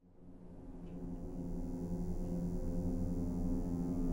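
Low, steady droning tone of an ambient film-score drone, fading in from silence over the first couple of seconds and then holding.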